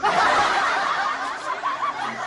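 A sudden burst of laughter from several people, with short high giggles breaking through near the end.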